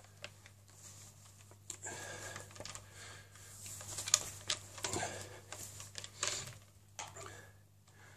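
Quiet handling noise as an electric bass guitar is turned over and moved up close to the camera: irregular rustling of cloth and wood with small clicks and knocks, busiest a few seconds in.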